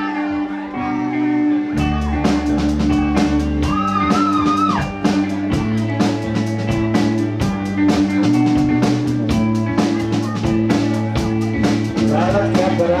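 Live indie rock band playing an instrumental intro on electric guitars; about two seconds in the drum kit comes in with a steady beat and the full band plays on together.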